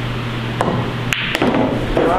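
Pool balls being struck on a pool table: a cue hitting the cue ball and balls knocking together. There are a few sharp clacks, one about half a second in and a couple just after a second.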